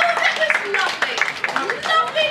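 Repeated hand claps, with voices calling out over them.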